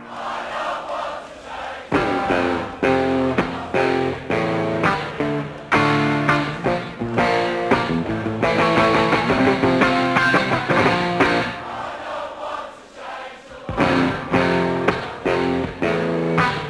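Live rock music led by electric guitar: chords struck in an instrumental break between sung verses, with short pauses between strokes and a brief quieter stretch near the end.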